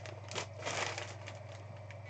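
Clear plastic bag around a jersey crinkling and rustling as it is handled, loudest for under a second near the middle, with a few light clicks.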